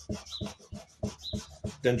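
A knife sawing back and forth through a compressed sawdust fire log, a quick run of short strokes, several a second.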